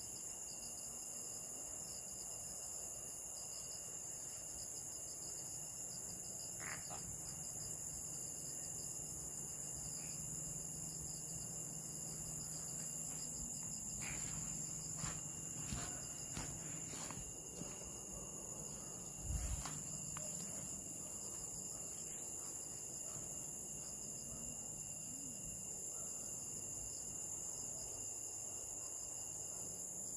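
Steady night chorus of crickets and other insects, a continuous high shrill. A few short clicks come around the middle, and a dull thump a little later is the loudest sound.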